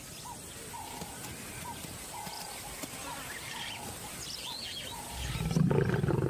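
A quiet natural background with faint, scattered high chirps. About five seconds in, a lioness starts a loud, low, pulsing growl, which may be a reprimand to her cub for wandering off or a warning.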